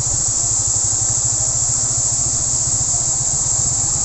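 Loaded logging truck's diesel engine running steadily at low revs, heard close alongside as the truck crawls along.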